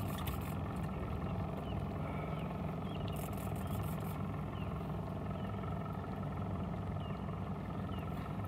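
A boat motor idling steadily, a low even hum.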